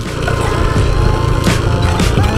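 Wind and engine rumble from a moving motorcycle on a rough, potholed road, with a single sharp knock about one and a half seconds in, typical of the bike jolting over a hole. Music plays faintly underneath.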